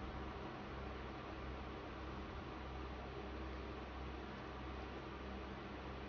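Steady, faint background hiss with a low hum: room tone, with no distinct sounds.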